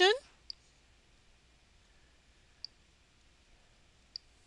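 Two short computer mouse-button clicks about two seconds apart, over quiet room tone, as on-screen elements are picked up and dropped.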